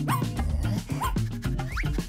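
Background music with a steady beat, over which a small dog gives a few short, high whimpers.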